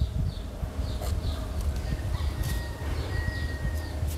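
Outdoor background: small high chirps repeating, typical of birds, over a steady low rumble. A thin steady whine runs for about two seconds in the middle.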